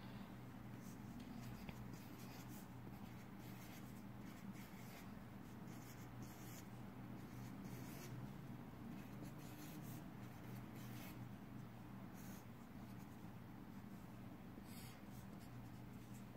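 Marker pen writing on paper: faint, short scratchy strokes at irregular intervals as small circled letters and lines are drawn, over a steady low hum.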